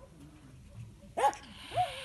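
A wild European polecat in a wire cage trap giving two short, sharp defensive calls about half a second apart, starting a little after a second in. The second call is a brief pitched cry that falls away.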